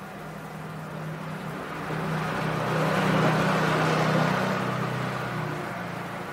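A vehicle passing by: an engine hum and road noise that swell to a peak about three to four seconds in, then fade away.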